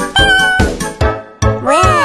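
An animated character's wordless, cat-like voice over children's cartoon music: a held high note, then a call sliding down in pitch near the end.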